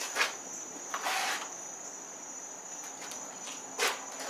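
Rustling and knocking of a compound bow being picked up and handled, with a brief hiss about a second in and a sharp knock near the end. A steady high-pitched tone runs underneath throughout.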